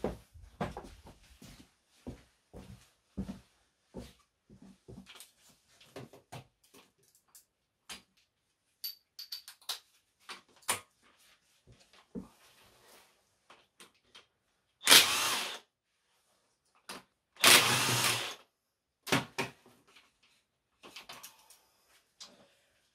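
Small knocks and clinks of tools and metal parts being handled, then, late on, a cordless power tool run in two short bursts a couple of seconds apart, the loudest sounds: the 17 mm bolts of a BMW differential being undone.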